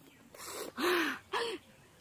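A woman's breathy vocal sounds while eating: a short rush of breath, then two gasp-like exclamations, the first longer and the second short, each rising and falling in pitch.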